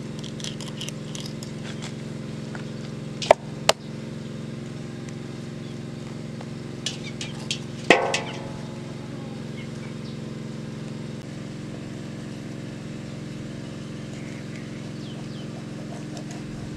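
Kitchen knife scraping and working raw fish flesh on a foil-covered surface: light scratchy ticks, two sharp clicks a few seconds in, and a louder knock with brief ringing about halfway. A steady low hum runs underneath.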